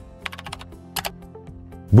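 Computer keyboard typing: a quick run of key clicks starting about a quarter second in, then a couple more about a second in, over soft background music.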